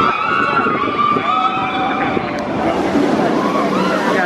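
The Jurassic World VelociCoaster's train rushing along its steel track with a steady rumble. Its riders scream over the top, in long wavering cries.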